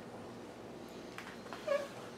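Quiet room tone with faint handling of a large picture book as it is shifted, and a brief short voice sound near the end.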